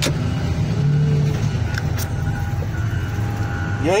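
Excavator engine running steadily, heard from the operator's seat, with a single sharp click about halfway.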